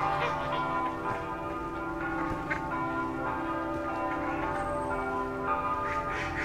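Bells ringing, many overlapping tones held and dying away slowly, with fresh strikes now and then.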